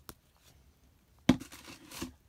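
A couple of faint clicks, then a sharp knock a little past the middle as a flashlight is set down, followed by a short rustle and scrape of the kit's fabric and plastic packaging.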